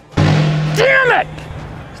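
A sudden loud blast of noise just after the start that dies away over about a second, with a man's short shout over it and music underneath.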